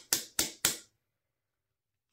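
Three quick finger snaps in the first second, about a quarter second apart, then near silence.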